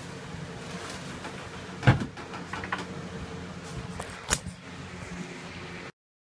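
Handling noise of a plastic scrim mesh sheet being pressed and shifted against a wooden bulkhead: a loud knock about two seconds in, another sharp one a little after four seconds, and lighter rustles and taps between, over a steady hum. The sound cuts off just before the end.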